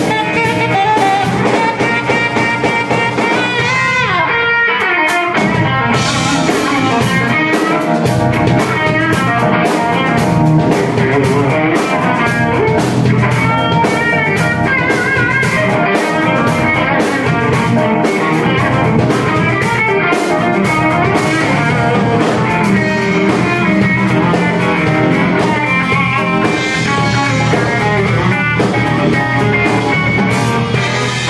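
Live funk-soul band playing: electric guitar over electric bass and a drum kit, with a saxophone playing at the start.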